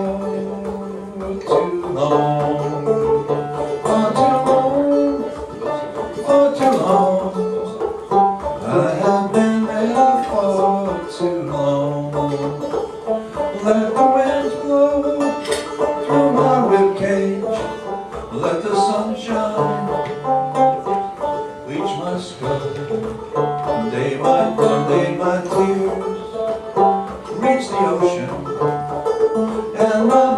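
Banjo playing an instrumental passage: a picked melody over held low notes that change every couple of seconds.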